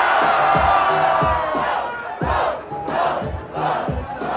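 Rap-battle crowd cheering and shouting in reaction to a punchline: a dense roar that breaks into separate yells after about two seconds. Underneath runs the backing beat with regular low thumps.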